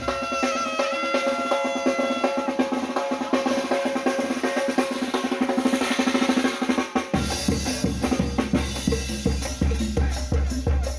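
Tamborazo band playing live. Saxophones carry a melody over quick drumming. About seven seconds in, the tambora bass drum and the cymbal mounted on it come in with heavy, regular beats.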